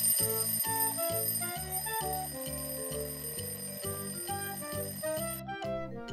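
Alarm clock sound effect, a steady high-pitched electronic ring, over light background music. The ring stops shortly before the end.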